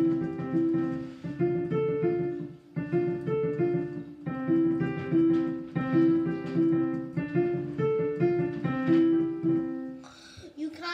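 Digital piano playing arpeggio practice: the same short up-and-down figure of notes repeated about every second and a half over sustained low notes.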